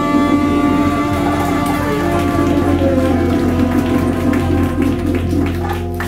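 Live band of saxophones, guitars, bass and drums holding a loud sustained chord over rapid, dense percussion strikes.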